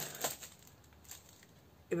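A few short, light clicks as small objects are handled, then quiet room tone.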